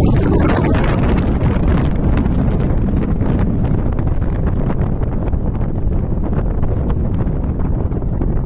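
Rumble of a departing Kita-Osaka Kyuko 9000 series subway train carrying on steadily into the tunnel just after its tail has passed, with the rush of air it leaves behind buffeting the microphone.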